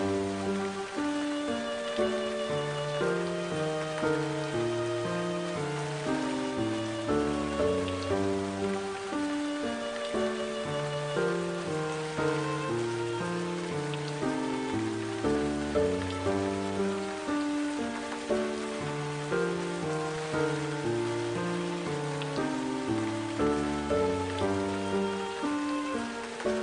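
Background music of slow, steadily stepping held notes over a repeating bass pattern, laid over a steady hiss of heavy rain.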